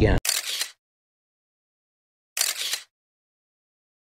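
Two identical camera-shutter sound effects, each a short snap about half a second long, about two seconds apart, with dead silence between them. A man's voice is cut off abruptly at the very start.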